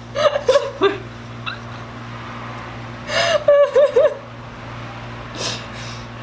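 People laughing in short bursts, once near the start and again around three seconds in, with a brief breathy burst near the end, over a steady low hum.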